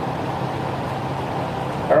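Steady low room hum with no distinct events.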